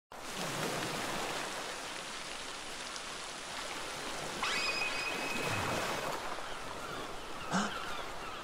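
Steady rain falling. A bright, steady high ringing tone starts suddenly about four and a half seconds in and lasts under two seconds.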